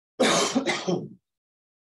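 A man coughs to clear his throat: two quick, harsh bursts within the first second, then silence.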